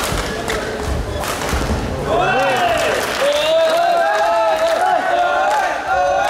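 Badminton doubles rally: rackets hitting the shuttlecock and shoes thudding on the court. From about two seconds in, several voices shout long, overlapping calls of support over the play.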